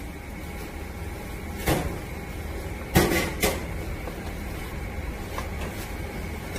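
Low steady background hum with three brief knocks, about a second and a half, three seconds and three and a half seconds in.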